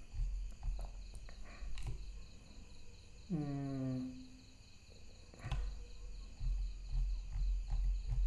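A man's brief hummed "mm" a little past three seconds in, over a low background rumble with a few faint clicks.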